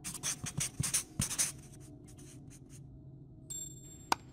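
A pen scratching across paper in a quick run of strokes during the first second and a half: a handwriting sound effect. A short buzz follows near the end.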